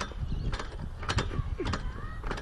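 Outdoor gym seated press machine being worked back and forth: its metal pivots clack and squeak with each stroke, a pair of clicks about every half second with short squeals between.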